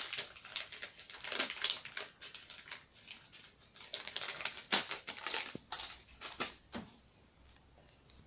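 Crinkling and rustling of a baby-wipe packet and a disposable diaper being handled: a run of irregular crackles and small clicks that thins out near the end.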